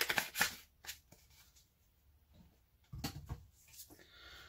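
Spice containers being handled by hand, rattling and clicking: a short rattling burst at the start, a single click just before one second in, and another rattle about three seconds in as a jar of seasoned salt is picked up.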